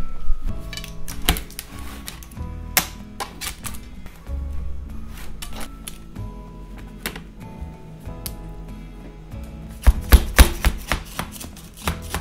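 Knife blade tapping and scraping against the rim of a metal tart pan and the baked crust, working the crust loose where it sticks. It is a run of short sharp clicks and knocks, loudest in a quick cluster near the end, over soft background music.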